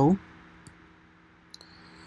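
Two faint, short computer mouse clicks, about a second apart, over a quiet room with a faint steady hum.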